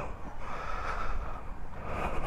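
Low, steady wind rumble on the camera microphone, with faint breath-like noise and no distinct event.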